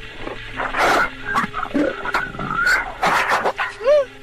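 Loud, harsh, creature-like noises in a staged 911 call recording: the frightening sound that makes the caller ask what it was. They come in several uneven bursts over a steady low hum.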